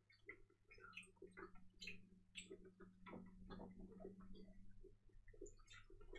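Faint chewing: small, irregular clicks and crackles of people eating a white-chocolate bar with crunchy cereal pieces, over a steady low hum.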